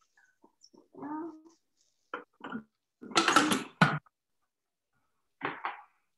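Hard plastic Thermomix lid being handled, scraped down and set back on the steel mixing bowl: a few light clicks and knocks, then a louder scraping clatter about three seconds in that ends in a sharp knock, and two more small knocks near the end.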